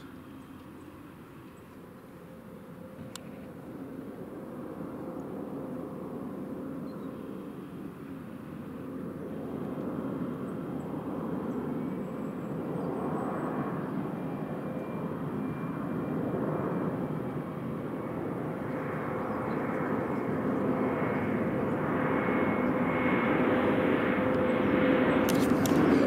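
Bombardier Global 6000 business jet's twin Rolls-Royce BR710 turbofans on approach, the jet noise growing steadily louder as it nears, with a steady engine whine through it.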